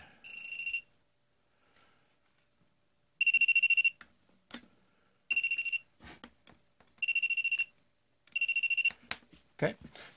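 Tacklife CM01A clamp meter's non-contact voltage detector beeping: five high-pitched beeps of about half a second each at uneven intervals, each one signalling that the jaw tip senses the voltage on a live (hot) wire.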